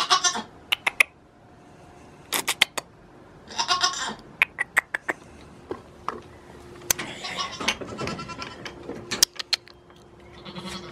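A goat bleating three times, the last call the longest, with short sharp clicks and knocks between the calls.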